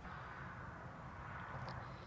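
Quiet outdoor background: a faint, steady low rumble with a faint click near the end.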